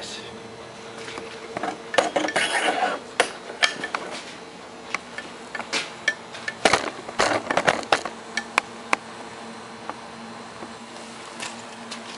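Metal clanks, knocks and rattles of tools and a battery cell being handled and set into a steel bench vise. The knocks come in a few bunches, with a faint steady hum under them.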